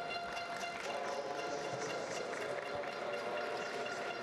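Steady indoor velodrome ambience with faint music playing over it.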